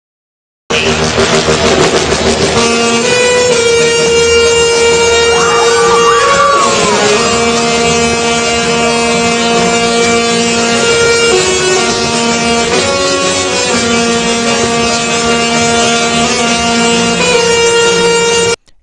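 Singing Tesla coil playing a tune in long, buzzy, horn-like notes that step from pitch to pitch every second or so.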